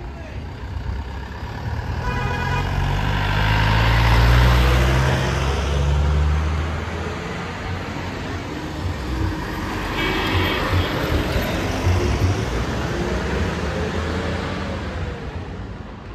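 Road traffic passing close on a town street. A heavy vehicle's engine swells to its loudest about four seconds in and fades, and another vehicle passes about ten seconds in. Brief high tones sound twice, near the start and about ten seconds in.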